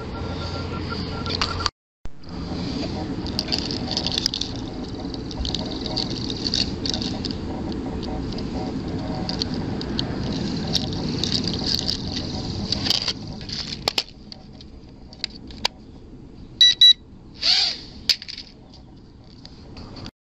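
Wind buffeting the microphone and small clicks of a toy quadcopter being handled as its battery lead is plugged in, then a few short electronic beeps near the end.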